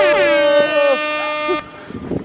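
A loud, horn-like sound effect edited in over the footage: several stacked tones slide downward again and again, then hold steady, and cut off suddenly about one and a half seconds in. Street noise follows.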